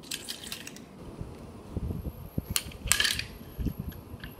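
Toy train engines pushed by hand along wooden railway track: wheels rumbling and knocking over the track, with a run of clicks and a couple of sharp clacks as the toys knock against each other and the rails about two and a half to three seconds in.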